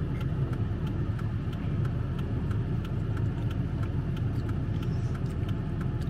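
Steady low rumble of a car's idling engine heard inside the cabin, with faint, regular light ticks about twice a second.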